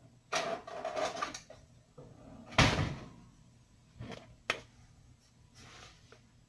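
Kitchen handling sounds: scraping and a rattle, then one loud sharp clatter about two and a half seconds in, and two short knocks, as a plastic sugar canister and a measuring cup are fetched and opened.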